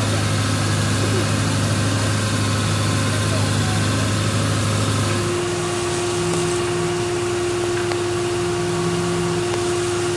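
An engine idling steadily. About five seconds in, a low hum gives way to a steady higher-pitched drone.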